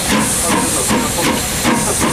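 Px-class narrow-gauge steam locomotive standing in steam, hissing loudly and steadily.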